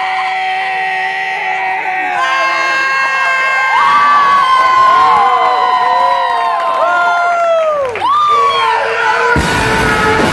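Electric guitar feedback: long held, ringing tones that bend and swoop down in pitch. About nine and a half seconds in, the full rock band, drums and distorted guitars, crashes in.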